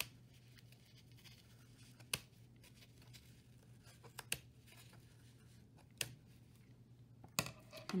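Scissors snipping through yarn warp threads strung on a cardboard loom: about five separate sharp snips, roughly two seconds apart.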